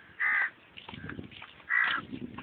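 An animal giving two short, harsh calls about a second and a half apart, one near the start and one near the end.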